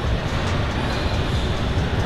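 A StairMaster stepmill running with a steady mechanical rumble from its revolving stairs, under background music.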